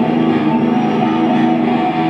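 Live psychobilly band playing: electric guitar chords held and ringing over upright bass.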